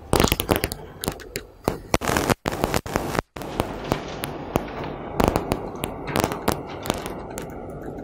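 Quick, irregular clicks and crackles of laptop keys and mouse being worked close to the microphone. The sound cuts out briefly twice, a little over two and three seconds in.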